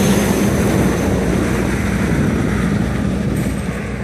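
A heavy dump truck passing close by, its engine and tyres making a loud, steady rumble with a low hum, easing slightly near the end.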